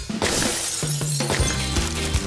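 Background music with a steady bass line, opening with a sudden crash of noise that fades out over about half a second.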